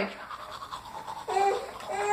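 Toothbrush scrubbing on teeth, then about a second and a half in a baby starts a fussy, whining cry on a steady high pitch.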